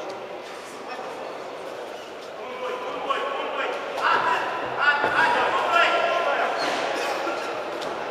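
People shouting and calling out in a large echoing sports hall, getting louder from about four seconds in, with a couple of sharp knocks mixed in.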